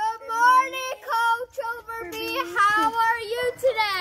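Children's voices speaking together in a sing-song chant, a greeting recited in unison.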